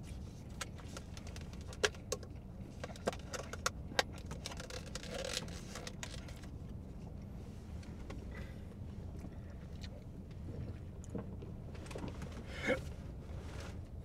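Light clicks and rustles of a takeaway paper coffee cup being handled, mostly in the first four seconds, over a steady low hum in a car cabin.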